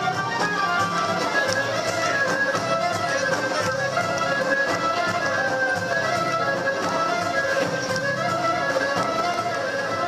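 Traditional folk dance music from a small live band, a violin carrying the melody over a steady accompaniment, playing continuously at an even level.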